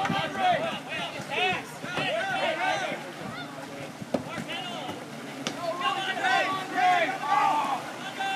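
Several people shouting and calling out across the water, their voices overlapping, in two bursts with a short lull in the middle.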